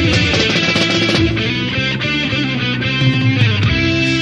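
Heavy metal band playing an instrumental passage on a 1992 demo recording: electric guitars over bass and steady drums, without vocals.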